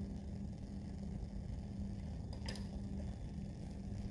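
Quiet room tone with a steady low hum, and one faint click about halfway through, from handling the small lab tube and zinc scooper.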